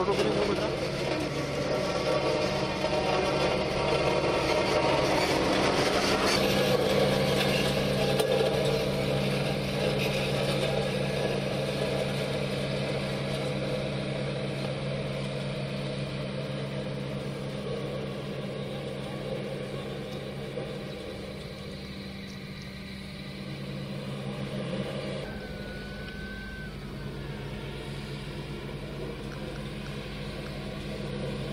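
Diesel engines of road-paving machinery, an asphalt paver and a tandem road roller, running steadily with a broad mechanical clatter, slowly getting quieter.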